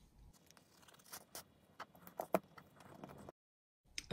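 Faint scrapes and light ticks of fingers handling and pressing folded corrugated cardboard, a few small sounds scattered through the middle. Near the end the sound cuts off to dead silence.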